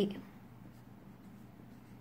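A marker pen writing on paper, faint.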